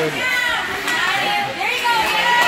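Several high-pitched young voices shouting and calling out over one another, with no clear words.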